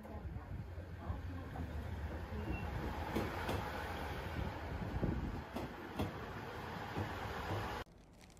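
JR KiHa 110 series diesel railcar running slowly past the platform: a steady low rumble of engine and wheels, with a few sharp clicks of wheels over rail joints. The sound cuts off suddenly near the end.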